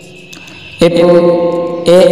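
A man's voice holding a drawn-out vowel at a flat, steady pitch for about a second after a short quiet pause. A second drawn-out syllable starts near the end.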